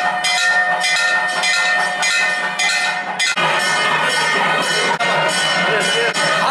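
Temple bell rung by hand with a rope, struck about twice a second, each stroke leaving a lasting metallic ring. About three seconds in the sound changes abruptly to a fuller, denser mix with the ringing still going.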